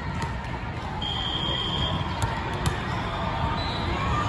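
Steady din of a crowded indoor volleyball hall, with a referee's whistle blown once about a second in and held for about a second. A few sharp taps follow just after.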